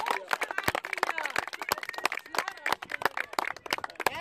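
Several spectators clapping their hands in a fast, uneven patter, with a few brief shouts mixed in, as a football crowd does to cheer a goal.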